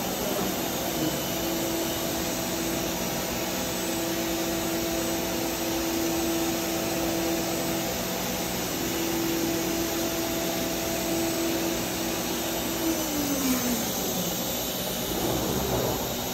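CNC router spindle whining at a steady high speed over the steady rush of the dust extraction, the head traversing the table. About 13 s in the spindle winds down, its pitch falling away, while the suction rush keeps going.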